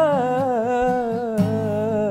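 A young man's voice holding one long sung note with a wavering vibrato that slowly falls in pitch, over acoustic guitar chords, with a fresh strum about one and a half seconds in.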